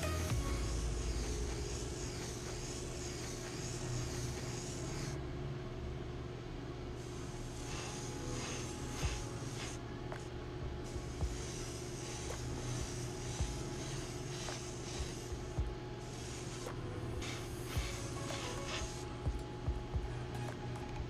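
Airbrush spraying paint, a hiss that runs for a few seconds at a time with short pauses as the trigger is pulled and released, over background music and a steady low hum.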